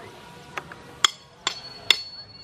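Three sharp knocks about half a second apart, starting about a second in; the last is followed by a brief metallic ring.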